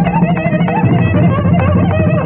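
Carnatic violin playing a gliding, heavily ornamented melody with mridangam strokes beneath it, over a steady low drone.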